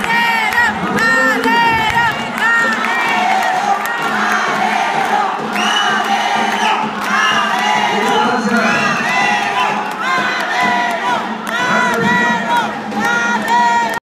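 A close crowd of rally supporters shouting and cheering, many voices overlapping at once, with a long shrill note about six seconds in.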